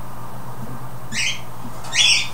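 A bird gives two short, high squawks, one about a second in and one just before the end, over a low steady hum.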